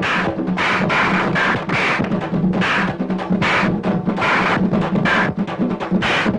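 Fast rhythmic drumming as film background music, with sharp strokes about three times a second over a steady low drone.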